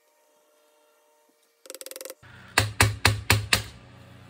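Hard plastic clicks and knocks from a vacuum cleaner's cable reel being pried apart with a screwdriver. A quick rattle of clicks comes a little under two seconds in, then five sharp knocks about four a second, over a low hum that starts halfway through.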